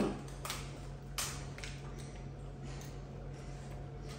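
Quiet eating sounds at a table: two sharp clicks or taps about half a second and a second in, then a few faint ticks, over a steady low hum.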